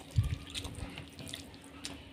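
Close-miked wet eating sounds: rice and curry gravy squished and gathered by hand on a plate, with chewing. A soft low thump just after the start, then faint scattered small wet clicks.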